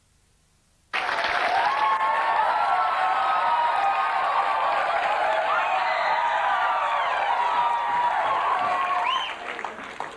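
Audience applauding and cheering with whoops, starting abruptly about a second in and dying down near the end as a presenter takes the stage.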